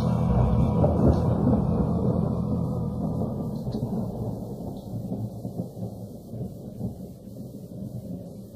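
Rolling thunder and rain from a thunderstorm sound effect, fading out steadily as a song ends.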